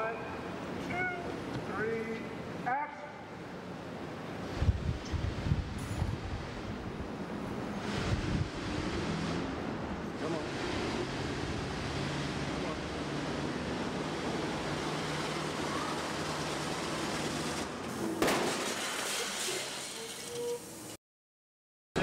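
Street traffic noise: a voice in the first few seconds, then a steady rush of traffic with a few heavy low thumps around five to eight seconds in, cutting off abruptly near the end.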